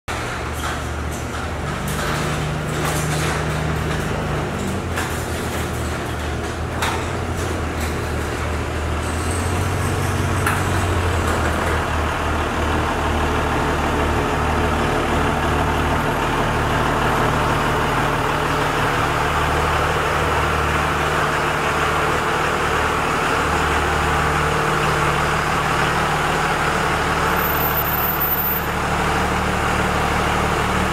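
A 24-valve Cummins inline-six turbo diesel in a 2001 Dodge Ram 2500 running steadily, growing a little louder after about twelve seconds as it comes closer. A few sharp clicks sound over it in the first several seconds.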